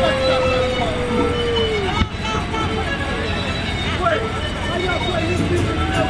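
A loud voice holds one long, slowly falling note that drops away about two seconds in. Crowd voices and music carry on underneath.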